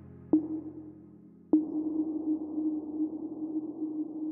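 Outro of an electronic dance track: over a fading synth pad, two sharp ping-like hits about a second apart, each leaving a ringing tone, the second one held on with a soft hiss.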